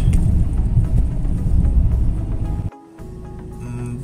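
In-cabin rumble of a BMW E46 320d's four-cylinder diesel engine and tyres while driving. Near three seconds it cuts off abruptly, giving way to a quieter, steady hum of the engine idling with the car stopped.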